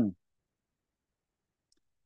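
Near silence: a pause in speech, the sound dropping to dead silence just after a man's word trails off.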